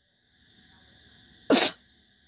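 A faint drawn-in breath, then a short, sharp burst of breath noise from the speaker close to the microphone, about a second and a half in.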